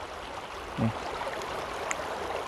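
Steady rushing of water flowing in the channels of the travertine terraces.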